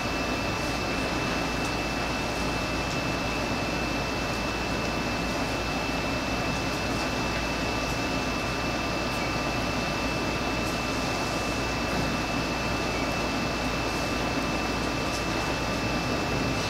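Steady room tone: an even hiss and low hum with a thin, constant high whine, unchanging throughout.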